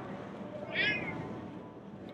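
A latex modelling balloon gives one short, high squeak a little under a second in as it is twisted into a balloon animal.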